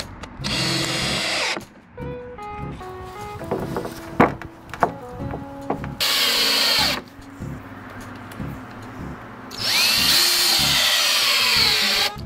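Power drill driving long wood screws through a 2x4 and into deck boards, in three runs: one of about a second and a half near the start, a one-second run in the middle, and a longer run near the end in which the motor's pitch rises and then falls. Soft background music plays in the gaps.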